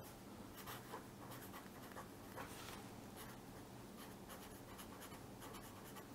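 Felt-tip pen writing on paper: faint, short strokes as letters are drawn.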